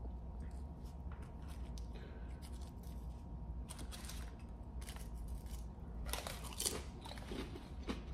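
Crunchy potato chip, an original Zapp's, bitten and chewed together with a piece of pickled pig lip. Faint, irregular crunches start a little before the middle and come in a short cluster in the second half.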